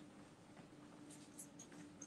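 Near silence: room tone with a faint steady hum and a few faint soft ticks.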